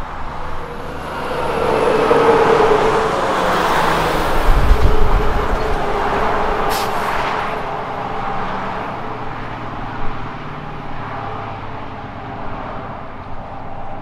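A semi-trailer truck passes at highway speed. Engine and tyre noise build up, reach their loudest with a deep rumble about five seconds in, then fade as it goes away. The steady noise of further trucks on the highway runs behind it.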